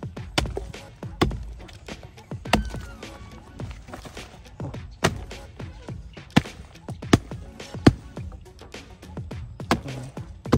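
Repeated blows of a chopping tool into a soft, rotten log, about eight strong irregular strikes with splintering and crumbling wood between them; the hardest blows fall in the second half.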